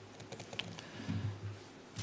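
A few faint laptop key clicks, the kind made by pressing a key to advance a presentation slide, in a quiet pause.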